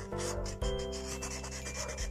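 Marker pen scratching and rubbing across a chessboard's surface in quick strokes as a signature is written, over soft background music.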